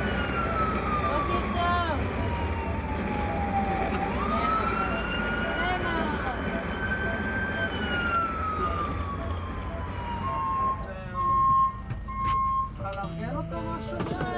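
Ambulance siren in a slow wail, falling, rising quickly, holding and falling again, heard inside the moving ambulance over the low rumble of engine and road. Near the end come three short, loud, steady beeps.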